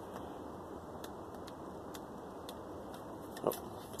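Low steady background hiss with a handful of faint, light clicks spread through it; a short spoken "oh" near the end.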